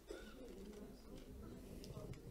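A faint, distant voice reading aloud off-microphone, barely above quiet room tone.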